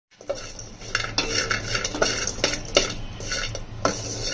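A metal utensil clinking and scraping against metal cookware, as in stirring: several sharp, irregularly spaced clinks, each with a short ring.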